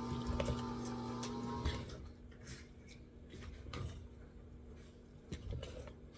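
Metal cooking utensils stirring macaroni salad in a stainless-steel stockpot, with scattered soft clicks and knocks against the pot. A steady hum with a few held tones runs underneath and stops about two seconds in.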